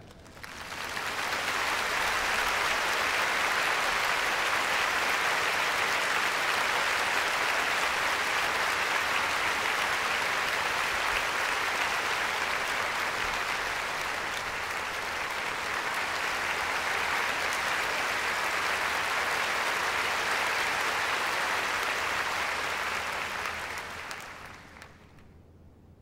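Large concert audience applauding steadily: the applause swells over the first second or two, holds, and dies away about 24 seconds in.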